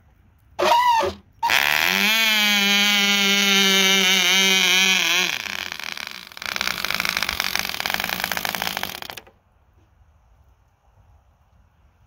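Small 1/2A two-stroke glow engine on a free-flight model plane: a brief catch, then a steady high-pitched run, going rougher about five seconds in before cutting off suddenly about nine seconds in. Why it stopped is uncertain: either the fuel shutoff or sudden fuel starvation.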